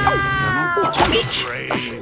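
Cartoon soundtrack of music and voices mixed together, with a long held wailing note that slides slightly down and stops about a second in.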